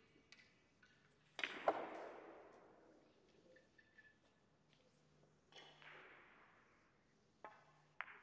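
Faint, sharp clacks of billiard balls from another table in the hall: one about a second and a half in and a softer one near six seconds. Each trails off in the hall's echo.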